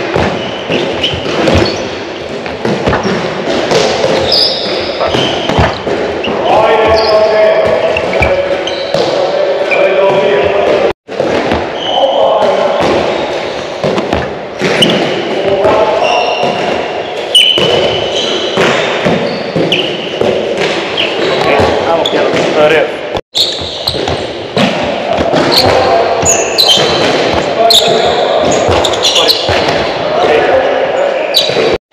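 A handball being thrown, caught and bounced on a wooden sports-hall floor, with indistinct voices throughout. The sound breaks off for an instant twice.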